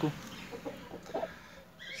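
Domestic chickens clucking faintly, a few short clucks.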